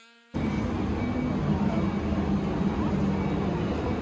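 Outdoor crowd ambience with a heavy wind rumble on the microphone and people's voices mixed in, cutting in suddenly about a third of a second in and running steadily and loudly.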